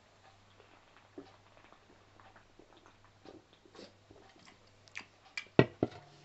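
A person drinking from an energy drink can: soft sips and swallows, then a few louder clicks and knocks near the end.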